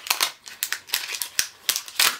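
Mystery pin packaging being handled: an irregular run of sharp crinkles and clicks.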